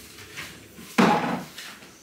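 A single sharp knock in a small kitchen about a second in, fading over about half a second, against faint room tone.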